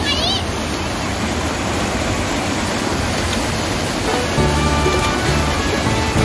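Water rushing over a canal weir, a steady rushing noise throughout, with a brief high-pitched call at the very start. Background music with held notes and a low bass comes in about four seconds in.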